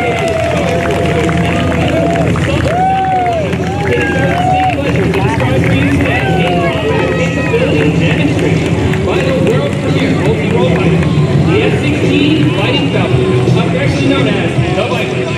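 Extra 330SC's Lycoming six-cylinder engine idling steadily as the plane taxis, with the crowd's voices calling and chattering over it.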